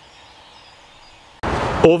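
Faint outdoor woodland ambience, then about a second and a half in a sudden loud burst of noise lasting about half a second, running straight into the first word of a man's voice.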